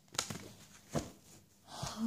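A deck of tarot cards handled in the hands: three soft card clicks spaced about a second apart, then a brief rustle near the end.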